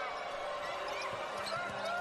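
Basketball being dribbled on a hardwood court during live play, with short faint squeaks over a steady arena background.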